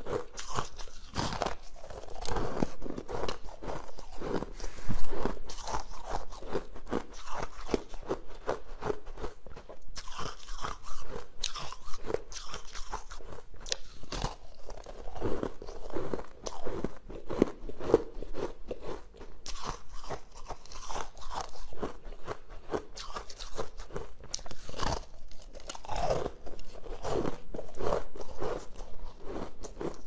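Close-up crunching and chewing of a frosted pink ice bar: a person bites off pieces of the ice and crunches them in a dense, continuous run of crisp cracks, with one louder crack about five seconds in.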